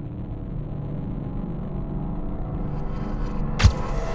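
Dark, rumbling logo-sting sound effect: a low drone with a few held tones that slowly grows louder, then a sharp hit about three and a half seconds in, followed by a wash of hiss.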